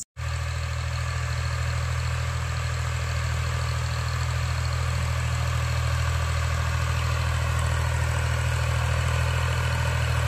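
Ford 3600 tractor's three-cylinder diesel engine running steadily while working a tilled field, a low engine hum that slowly grows louder as the tractor approaches.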